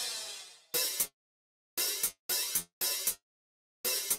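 Programmed electronic drum-kit part played back alone: a cymbal crash that rings out and fades, then a syncopated run of short, bright cymbal-like hits, each with a quick doubled stroke, at 116 beats per minute.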